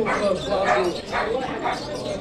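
A dog barking in short calls over the chatter of a crowd.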